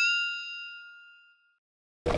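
A single bright bell-like ding, an editing sound effect, ringing out and fading away over about a second and a half, followed by dead silence where the location sound has been cut.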